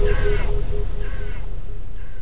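Outro of an electronic trap track after the beat has dropped out. A pulsing synth note fades away over a low rumble, while a short arched cry repeats about every 0.8 seconds.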